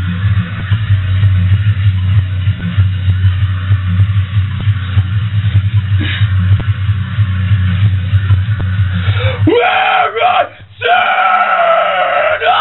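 A low, droning heavy metal backing track with drum hits plays. About nine and a half seconds in, the low drone drops out and a man starts screaming metalcore vocals into the microphone in short, harsh phrases.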